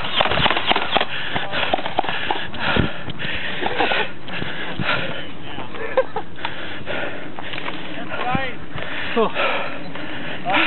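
Handling noise from a handheld camera carried on the move: a steady rush with many short knocks and rustles, under voices calling out nearby, which grow clearer near the end.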